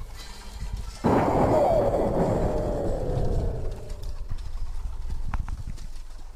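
A sudden loud burst of noise about a second in, with a falling tone inside it, dying away over about three seconds; a couple of short clicks follow near the end.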